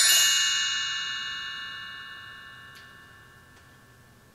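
A shimmering chime sound effect: a quick run of high bell-like notes that ring on together and fade away slowly over about four seconds.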